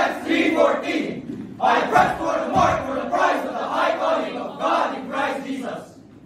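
Group of teenagers reciting in unison, many voices speaking loudly together in declaimed phrases, with a short pause a little over a second in.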